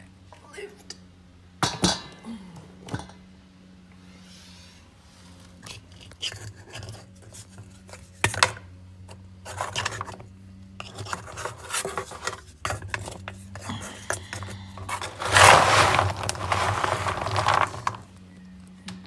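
Kitchen clatter of a dog bowl being handled: scattered sharp knocks and scrapes, then a louder rushing noise for about three seconds near the end, over a steady low hum.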